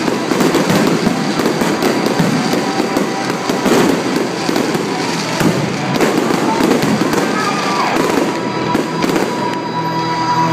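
Aerial fireworks display: a dense, unbroken run of crackling bursts and bangs from many shells going off at once.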